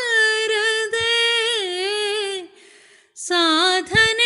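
A woman singing a devotional prayer solo, holding long notes that bend and waver in pitch, with a short pause for breath about two and a half seconds in.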